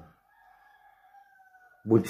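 A short click, then a faint, high, drawn-out tone held at one pitch for almost two seconds and dipping slightly at the end. A man's loud voice cuts in at the very end.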